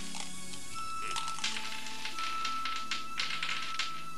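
Dice rattling and clattering in a quick run of clicks, starting about a second in and stopping just before the end, over background music with a long held note.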